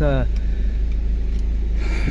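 A steady low hum with no change in pitch or level, with a short noisy rustle near the end.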